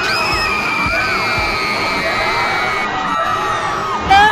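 A teenage girl wailing in a loud, drawn-out theatrical cry, her high voice wavering up and down, with music underneath.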